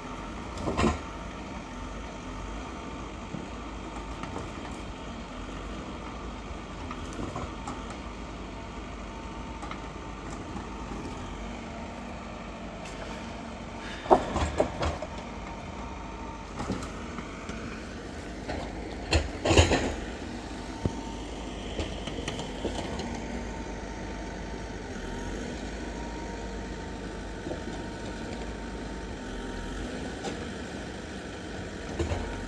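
Vimek 870.2 forwarder's diesel engine running steadily, with a thin steady whine from the crane hydraulics. Sharp knocks of pulpwood logs struck and dropped onto the load come just after the start, about halfway through, and loudest about two-thirds of the way in.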